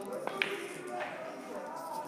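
Quiet billiard-hall room tone with faint background voices, and two light clicks about half a second in.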